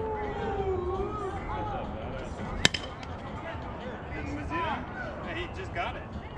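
Players' voices calling and chattering across an outdoor softball field, with one sharp crack a little before the middle that stands out above everything else.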